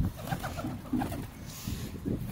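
Feral pigeons cooing repeatedly in a flock at close range, with a brief flurry of wingbeats near the end as two birds scuffle.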